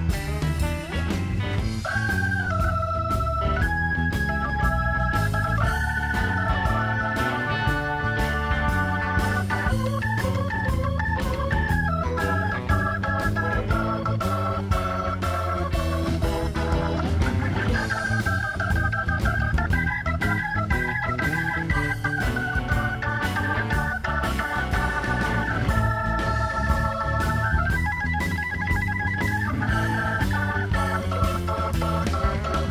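Hammond B3 organ taking a blues solo, held chords alternating with quick runs of notes, with the band's bass and drums playing steadily behind it.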